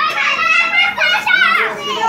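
Children's voices: high-pitched talking and calling out throughout.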